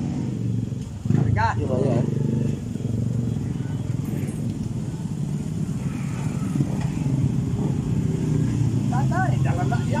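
A motor engine running steadily at idle, a low even rumble, with short wavering voices about a second in and near the end.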